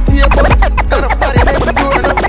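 Dancehall DJ mix with turntable-style scratching: quick, repeated rising and falling sweeps over a steady bass beat.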